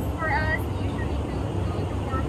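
Steady low rumble of an Airbus A321-200's cabin in flight, under a woman's soft speech.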